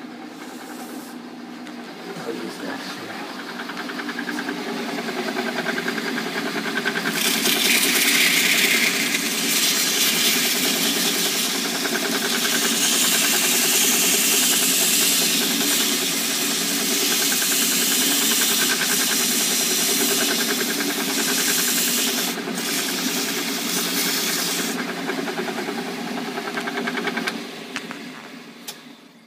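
Shop Fox M1018 metal lathe running, its motor and gearing giving a steady hum of several tones. From about seven seconds in until a few seconds before the end, the hiss of sandpaper held against the spinning oak workpiece rides over it, louder than the machine. The sound drops away near the end.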